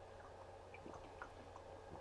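Faint sounds of drinking from a plastic water bottle: soft swallows and small scattered clicks over a low steady room hum.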